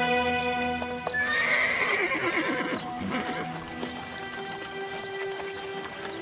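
A horse whinnying about a second in: a sharp rising cry that breaks into a wavering, falling neigh lasting about two seconds, over background score music with long held notes.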